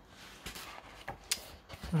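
Paper rustling as a paperback book's cover is lifted and its pages handled, with a few crisp flicks of paper.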